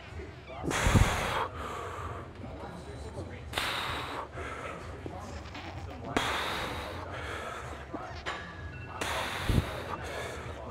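A man breathing out hard with each rep of a high-rep set on a pendulum leg press: four forceful breaths, each under a second and about two and a half seconds apart. There is a low thud with the first breath and another with the last.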